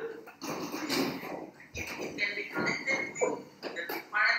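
A man speaking, heard through a video call's audio.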